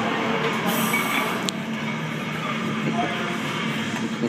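Steady gym din with indistinct background voices, and a single sharp metallic clink about one and a half seconds in as a loaded barbell is walked out of a squat rack.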